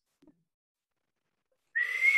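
Silence, then near the end a loud, steady whistle of cheering starts over a rush of cheering noise.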